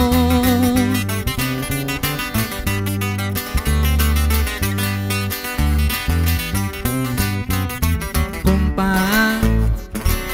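Instrumental break of a corrido: acoustic guitars picking quick runs of notes over strummed chords, with an electric bass holding low notes underneath.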